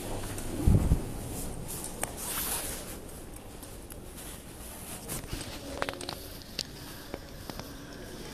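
Indoor background noise with a loud low thump about a second in, then a few short sharp clicks and knocks.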